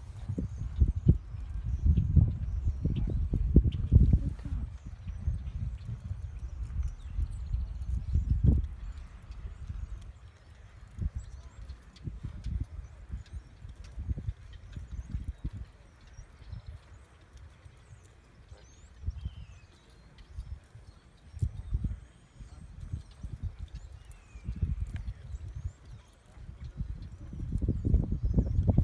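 Hoofbeats of a ridden three-year-old mustang on the deep sand of a pen: soft, irregular thuds, louder for the first several seconds and again near the end.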